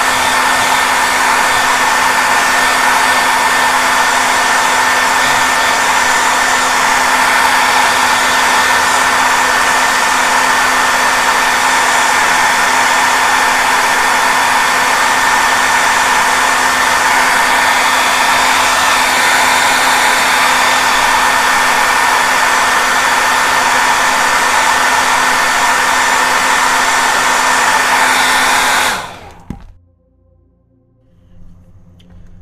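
Handheld hair dryer running loud and steady: a rush of air with a constant hum and a high whine on top. It is switched off about a second before the end and stops suddenly.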